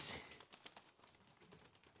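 Faint, scattered soft pats of a crowd patting their own bodies and legs with their hands.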